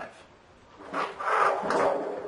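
Handling noise of the monitor and its cable harnesses on a tabletop: a rubbing, sliding sound that starts about a second in, after a brief quiet.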